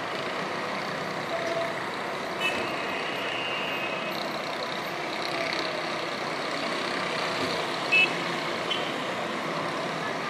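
Distant city street traffic: a steady wash of vehicle engines and road noise. Short high-pitched beeps come through about two and a half seconds in, and a brief louder beep at about eight seconds.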